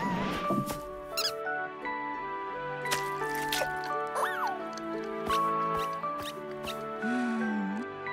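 Cartoon background music of held and plucked notes, with squeaky cartoon voice sounds over it: a quick rising chirp about a second in, a high glide up and back down near the middle, and a low wobbling note near the end.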